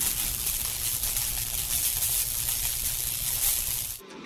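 A steady rushing, hissing noise with no tone or rhythm, ending suddenly.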